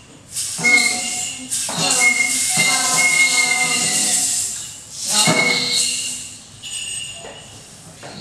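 A small amateur group performs a graphic-score composition in several swells of one to three seconds each. Held pitched notes, one a steady high tone, mix with a loud hissing, shaking noise, with brief lulls between the swells.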